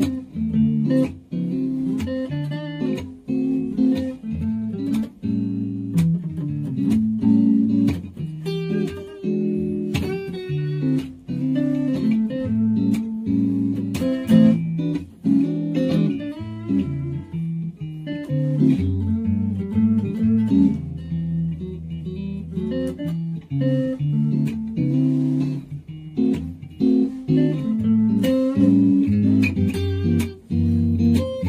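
Two guitars, at least one a solid-body electric, jamming on a blues progression: chords underneath, with improvised single-note lines over them.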